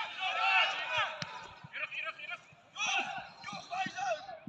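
Voices calling and shouting across a football pitch, too distant to make out words, with a few short dull thuds of the ball being kicked.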